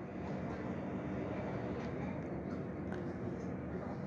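A steady low background hum, with a few light clicks and scrapes of a bowl against a wok as stir-fried lettuce and mushrooms are scooped out.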